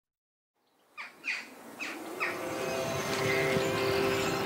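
Bird calls: four quick downward-sweeping chirps starting about a second in, then a steady bed of held tones swelling underneath them.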